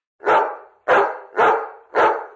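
A dog barking four times, about half a second apart.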